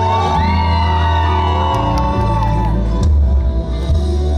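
Live band accompaniment of a pop ballad through the stage sound system, with steady deep bass and a high melody line that glides and bends, between the singer's sung lines.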